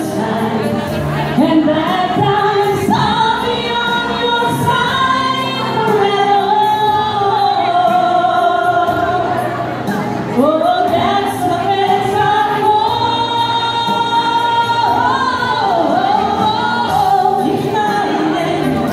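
Two female singers performing a song live with musical accompaniment, amplified through a hall's sound system; the melody includes long held notes, the longest in the second half.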